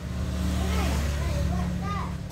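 A steady low motor rumble, such as an engine running close by, with a child's high voice over it in the second half.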